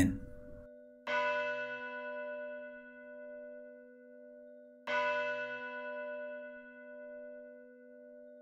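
A church bell struck twice, about four seconds apart, each stroke ringing on with a slowly fading, wavering hum.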